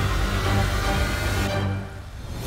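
Dramatic background score with a steady low pulse and sustained tones, fading away near the end.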